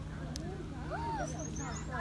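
Faint voices in the background, with a few short, high, rising bird chirps near the end.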